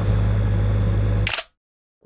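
Heavy truck diesel engine running steadily with a deep hum. About 1.3 seconds in there is a brief sharp clatter, and then the sound cuts off suddenly.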